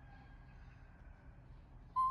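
Baby macaque giving one brief, high squeak at the very end, over a faint low room hum.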